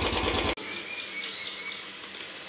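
Royal Enfield Bullet's single-cylinder engine idling, cut off abruptly about half a second in. After that come faint high chirping and a low steady hum.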